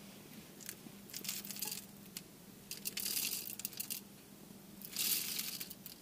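Coffee beans poured from a cup into a hand coffee grinder, rattling in three short spurts.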